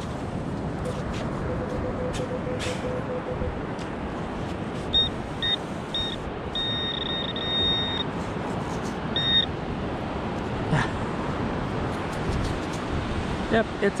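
Handheld metal-detecting pinpointer beeping as it closes on a coin in the sand: a few short beeps, then a steady tone for about a second and a half, then one more short beep. Behind it, a steady rush of surf.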